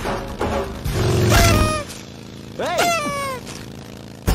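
Film soundtrack music with a heavy bass beat for the first two seconds. Then a pitched, voice-like call slides up and back down about three seconds in.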